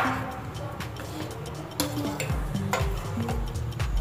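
A metal spoon stirring flax seeds in water in a steel pan, with a few clinks of the spoon against the pan, over background music with a steady beat.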